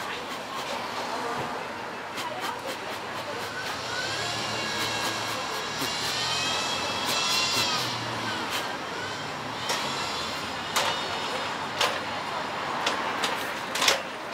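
Street traffic: a vehicle passes with a high whine that rises and falls in pitch over a low rumble, followed by a few sharp clicks near the end.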